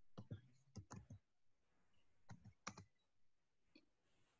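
Faint, irregular clicks of a computer mouse and keyboard being worked by hand, about seven in all, bunched about a second in and again near three seconds, over otherwise near-silent room tone.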